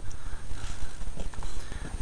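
Footsteps crunching along a gravel farm track in an uneven walking rhythm, over a low rumble of wind and handling on the microphone.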